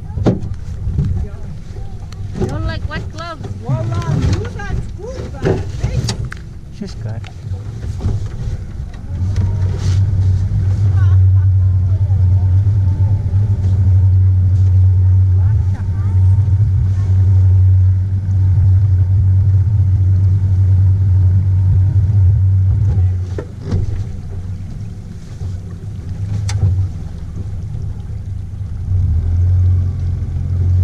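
A small boat's outboard motor running steadily, a low even hum, easing off about three-quarters of the way through and picking up again near the end. A voice is heard briefly in the first few seconds.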